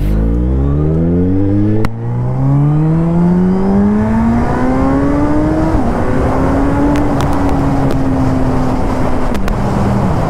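Suzuki Hayabusa Gen 3's inline-four engine pulling away and accelerating hard, its note climbing steadily from low revs. The note dips briefly about two seconds in and drops sharply near six seconds at gear changes, then holds fairly steady before another drop near the end, over wind rush.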